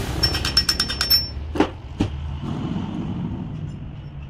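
Rapid metallic clicking, about eight sharp clicks a second for just over a second, then two separate knocks, from hand work with a screwdriver on a truck alternator's cast aluminium housing.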